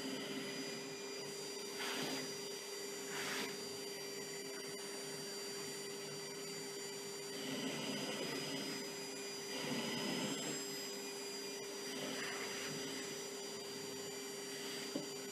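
Vacuum cleaner running steadily with a constant whine while its brush nozzle is drawn over a cat's fur. The rushing air swells briefly a few times.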